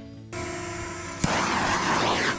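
Handheld gas torch lit with a click about a second in, then a steady rushing flame as it is played over the carved wood to scorch the surface.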